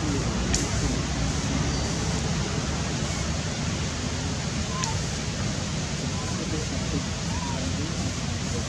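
A steady, even rushing noise, with faint distant voices underneath and two brief clicks, one about half a second in and one near five seconds.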